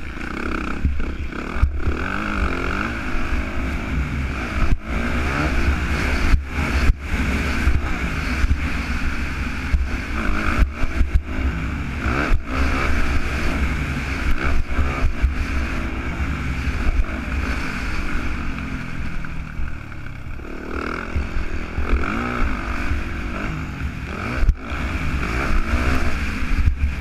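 Yamaha motocross bike's engine revving hard and falling away again and again as the rider shifts and goes on and off the throttle at race pace. Wind batters the helmet-camera microphone in a heavy rumble, with repeated knocks from the rough track.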